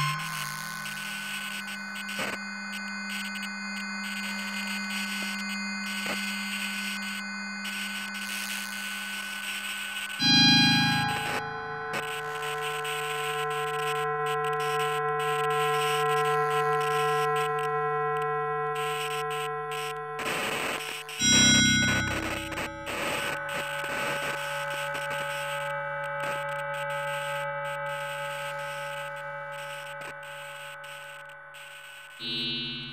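Electroacoustic computer music made in SuperCollider: several synthetic tones held at steady pitches over a hissing, crackling noise layer. Loud low swells come about ten and twenty-one seconds in, each followed by a new set of held tones.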